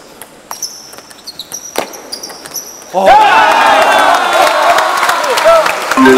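Table tennis rally: the light ball clicking off paddles and table, with a few short high squeaks. About three seconds in, the point ends and the audience breaks into loud shouting.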